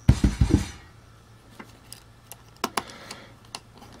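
A short bump of hands handling a small dual-fan heatsink, then a few faint, sharp clicks of small screws, plastic fan frames and a precision screwdriver being handled, over a faint steady low hum.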